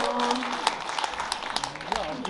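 Audience applause, heard as scattered separate claps. Under it a held voice fades out about half a second in, and a voice starts again near the end.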